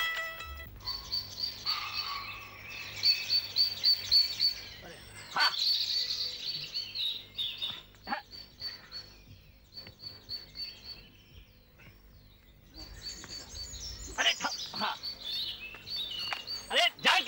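Small birds chirping in quick runs of short, high, repeated notes, coming and going in bursts. A few brief sharp knocks fall in between. A plucked-string music cue fades out about a second in.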